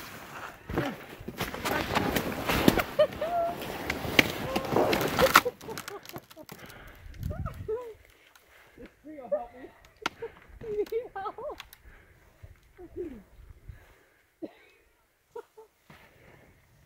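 Snowshoe footsteps crunching through deep snow, with branches scraping against jackets and packs, loud for the first five seconds or so, then much fainter. Quiet voices talk now and then in the second half.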